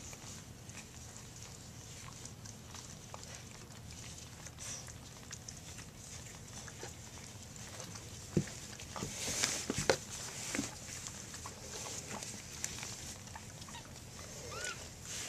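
Quiet handling sounds of a newborn cockapoo puppy being held to its mother's teat on newspaper bedding: soft rustling of paper and fur, with a few short knocks and scuffs about eight to ten seconds in.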